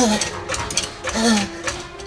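Floor jack being pumped by its long handle, its mechanism clicking with the strokes, while a man gives two short strained grunts.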